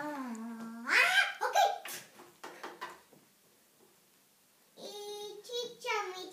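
A young child's voice making drawn-out vocal sounds rather than clear words, in two bursts with a quiet gap of about two seconds between them.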